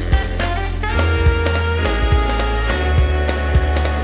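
Brass band music: horns over a drum kit, with a steady bass and regular beat.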